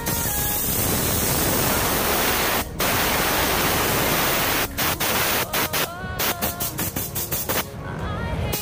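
Compressed-air spray gun (DeVilbiss GTI Pro Lite, 1.3 mm TE20 cap) hissing loudly with the trigger held, set at 33 psi with fluid and fan fully open. The hiss breaks briefly about a third of the way in. After about the halfway point it turns into short, choppy bursts over background music.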